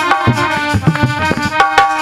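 Instrumental interlude of Indian devotional folk music: a harmonium playing a melody in held notes over steady hand-drum strokes.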